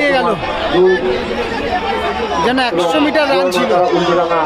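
Spectators' chatter: many voices talking over one another close by, steady throughout.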